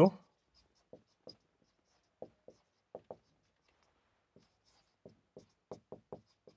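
Marker pen writing on a whiteboard: a dozen or so short, quiet squeaks and taps of the felt tip on the board at irregular intervals, one per stroke.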